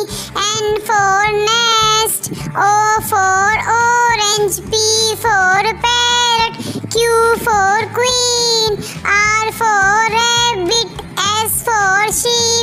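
A high child's voice singing an alphabet phonics song in short phrases, one letter and word at a time, over a backing track.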